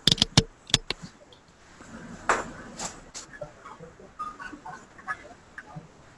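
A quick run of sharp clicks and knocks in the first second, then scattered fainter taps and clatter.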